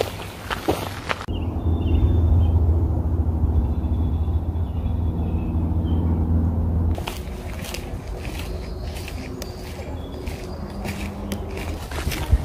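Footsteps crunching along a gravel trail, broken from about a second in to about seven seconds in by a louder low droning hum that masks the higher sounds.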